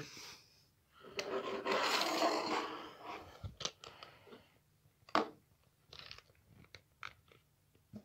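Plastic Poké Ball figure stands being handled, slid and set down on a wooden table: a scraping rustle for about two seconds, then a few separate clicks and knocks.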